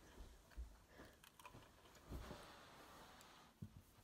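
Near silence: room tone with a few faint, soft low thumps and a light rustle, sounds of movement.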